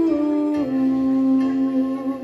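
Live music: a single melodic line holding a long note, which steps down to a lower pitch about half a second in and is sustained, with a sung or hummed quality.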